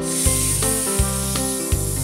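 A steady, snake-like 'sss' hiss for the letter S, over the song's instrumental backing with bass and guitar notes.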